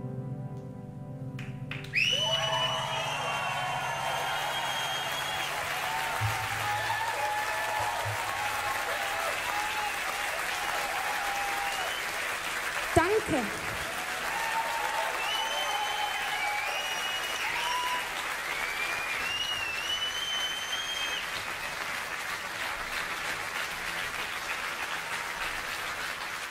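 The last notes of a slow song fade out, and about two seconds in a concert audience breaks into applause with cheering and high whistles that rise and fall over the clapping, running on until a sudden cut near the end.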